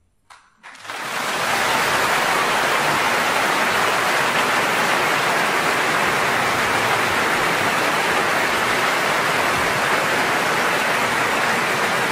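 A large concert-hall audience applauding: one early clap, then about half a second in the clapping breaks out all at once and holds steady and dense.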